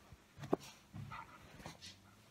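A Great Pyrenees making a few faint, short vocal sounds, with a sharp click about half a second in.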